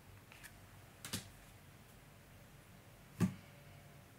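A few soft taps of a tarot card being handled and set down on a table, the last one, about three seconds in, the loudest.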